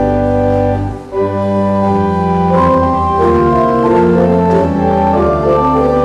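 Church organ playing slow, held chords over a sustained bass, the chords changing every second or so, with a brief break between phrases about a second in.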